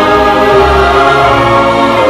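Choral music, voices holding long sustained notes.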